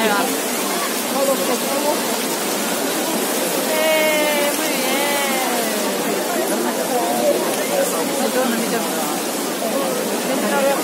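Trevi Fountain's cascading water, a steady rushing hiss, under the chatter of a crowd. One voice rises and falls clearly for about two seconds, around four seconds in.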